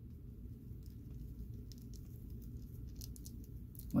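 Faint clicks and rustling of hands handling and posing a small plastic action figure, over a low steady hum. The clicks come a few at a time in the second half.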